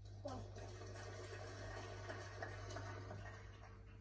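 Audience applause from a televised snooker match, heard faintly through the TV's speaker; it lasts about three seconds and fades out near the end.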